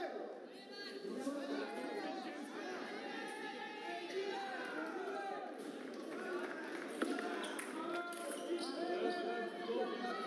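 Several voices talking at once in a large hall, indistinct and echoing, with one sharp knock about seven seconds in.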